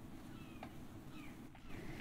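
Faint animal calls: several short, high, downward-sliding chirps in a row over a low steady hum.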